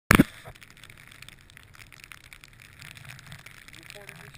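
A loud knock right at the start, then steady wind and snow noise on the microphone during a chairlift ride, with faint crackling throughout.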